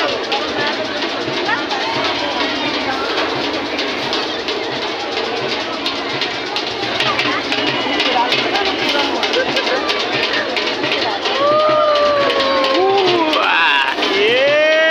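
Many voices of riders on an amusement-park ride chattering and calling out at once over music with a drum beat. Near the end, a few long, drawn-out high voices rise and fall.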